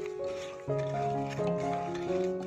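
Background instrumental music: held notes that change pitch every half second or so.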